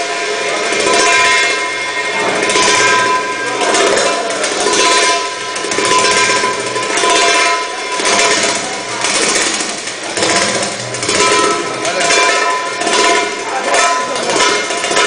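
Live band music for belly dance, with keyboard, a plucked string instrument and drums playing a steady rhythm that swells about once a second.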